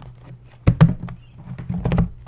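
Trading-card packs and boxes being handled on a tabletop: a couple of sharp knocks about two-thirds of a second in and a quick cluster of taps near the end, over a steady low hum.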